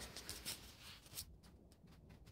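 Faint rustling and a few soft clicks from a handheld phone being moved about, mostly in the first half second, with another click about a second in; otherwise close to silence.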